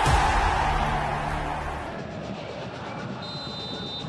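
Broadcast intro sting: music with a swelling whoosh and deep bass that fades away over the first two seconds. Near the end comes a short, steady, high referee's whistle signalling the kick-off.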